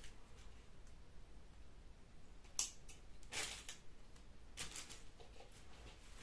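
Small handling sounds of craft materials at a table: a sharp click about two and a half seconds in, then two brief rustles.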